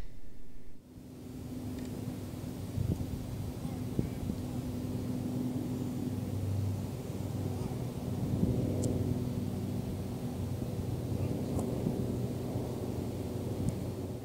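Steady low hum of distant engine noise, with a few faint ticks.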